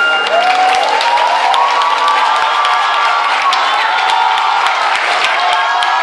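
Audience cheering right after a song ends, with many long, high-pitched shouts and screams and scattered clapping throughout.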